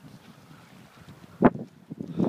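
Faint, steady wind noise on the microphone, broken about one and a half seconds in by a single short, sharp knock as the handheld camera is turned round.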